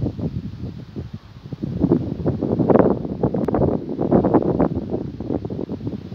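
Wind buffeting the camera microphone in uneven gusts, loudest in the middle and easing off toward the end.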